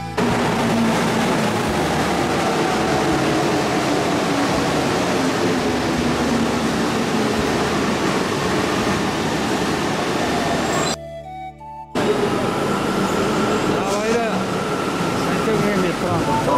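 Metro train pulling into an underground platform: loud running noise with a whine that falls slowly in pitch as it slows. The sound breaks off briefly about eleven seconds in, then loud platform noise returns with a steady high tone.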